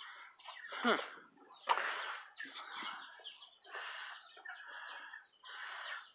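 Backyard chickens clucking in a string of short, irregular calls.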